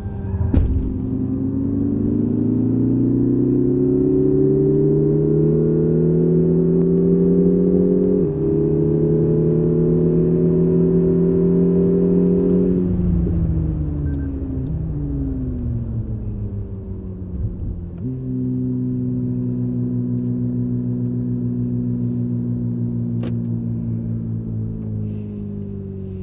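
Lexus IS 300h F Sport's 2.5-litre four-cylinder hybrid petrol engine, heard from inside the cabin under hard acceleration. The revs climb, drop sharply about eight seconds in, and climb again. They then fall away as the car slows, and from about two-thirds of the way through the engine settles to a steady drone.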